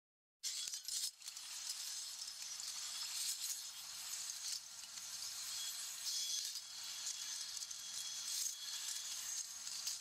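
Faint crackling and hiss with light clinks, thin and high with no low end, forming the quiet intro texture of a song; it begins about half a second in.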